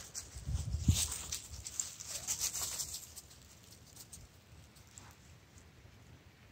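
Camera handling noise: a few knocks and rustles as the hand-held camera is moved and lowered, dying away after about three seconds.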